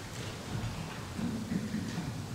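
Quiet room noise in a large hall: a faint low murmur with small rustles and clicks, and no music playing yet.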